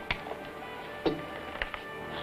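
Soft orchestral film score holding sustained notes, with a few sharp taps or knocks over it, the loudest about a second in.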